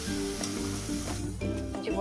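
Onions and tomatoes sizzling in oil in a stainless steel pressure cooker, stirred with a metal spatula that scrapes against the pot.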